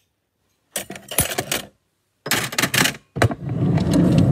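Metal kitchen utensils clattering in a drawer being rummaged through. Two short rattles come about a second apart, then a longer, heavier clatter begins near the end.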